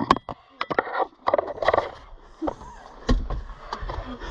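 Handling noise: an irregular run of sharp clicks and knocks with rustling as the camera and gear are moved about inside a wooden hunting blind.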